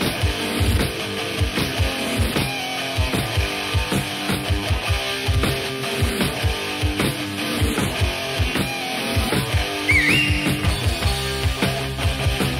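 Instrumental opening of a rock song: electric guitars over a drum kit keeping a steady beat, with a short high note sliding upward about ten seconds in.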